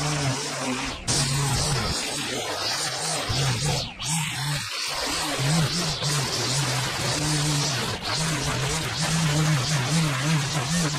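Petrol string trimmer running at high revs, its line whipping grass off the edge of a concrete path, with the engine note rising and falling as the throttle works. It breaks off briefly about halfway through.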